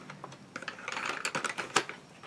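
A quick, irregular run of small clicks from about half a second in: wooden colored pencils clicking against each other and their box as they are handled and put away.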